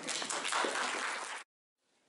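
Audience applauding, a dense patter of clapping that cuts off abruptly about a second and a half in, leaving silence.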